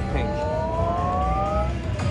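Slot machine bonus-round sound effect: a chord of electronic tones sliding steadily upward for nearly two seconds, then stopping, as the Bank Buster bonus reels fill with coin values. A steady low casino hum lies underneath.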